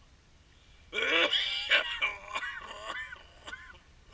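Gulls calling: a loud burst of wavering, overlapping cries about a second in, then a few shorter single calls.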